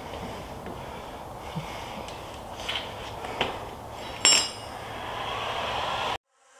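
An electric heat gun blowing with a steady hiss that grows louder near the end, with a few light knocks and clinks from the bat and gun being handled. The loudest knock comes about four seconds in.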